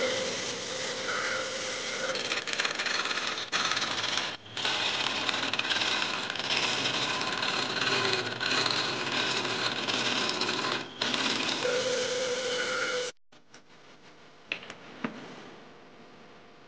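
Lathe turning tool scraping and cutting a spinning resin-and-wood blank: a rough, continuous cutting noise, broken briefly a few times as the tool lifts off. About 13 seconds in it cuts off suddenly, leaving a low background with a couple of faint clicks.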